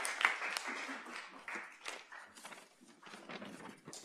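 Audience applause tapering off, the claps thinning to a few scattered ones and fading away over the first couple of seconds.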